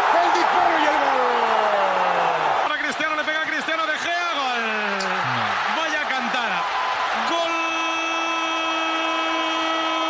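Football TV commentators screaming a goal: long drawn-out shouts over stadium crowd noise. The first shout falls slowly in pitch, and the last is one note held steady for nearly three seconds.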